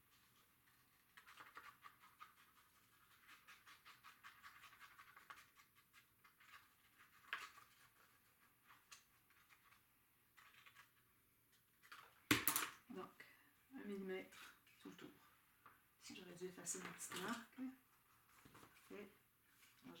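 Soft, rapid crackling of a tacky-glue squeeze bottle being squeezed along a paper edge, followed about twelve seconds in by one sharp click, then a few short, low voice-like sounds.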